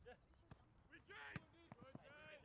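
About four sharp thuds of a soccer ball being struck on artificial turf, the last three close together near the end, with a player's shout in between.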